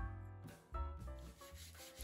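Soft background piano music over faint rubbing strokes of hand-smoothing the water-swollen pressed-board surface of a chest.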